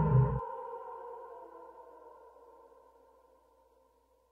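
An instrumental pop track ends: the bass and beat stop about half a second in, leaving a held chord that fades away to near silence.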